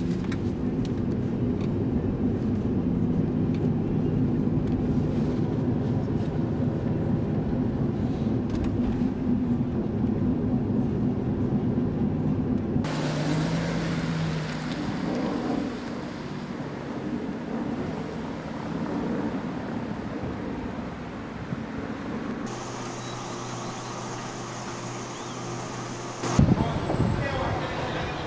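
Steady engine and road noise heard inside a moving car's cabin. About thirteen seconds in, it cuts to a quieter, more open sound of a car driving along a street outside. Near the end it cuts again to a different steady hum.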